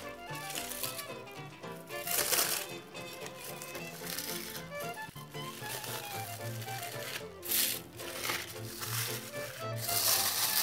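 Background music with a melody plays throughout, and aluminium foil crinkles in several short bursts as a foil packet on a baking tray is pulled open.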